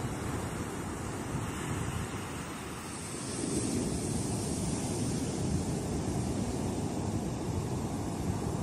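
Ocean surf breaking on a beach, a steady rushing noise that grows louder about three seconds in.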